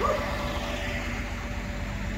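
Semi tractor's diesel engine idling with a low, even rumble.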